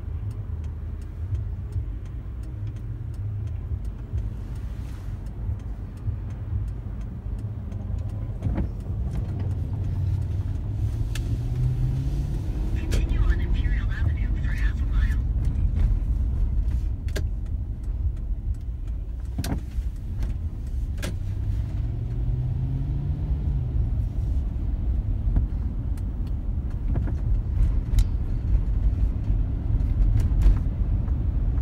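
Car driving, heard from inside the cabin: a steady low engine and road rumble. The engine note rises twice as the car accelerates, about a third of the way in and again about three quarters of the way through, with a few sharp clicks from inside the car.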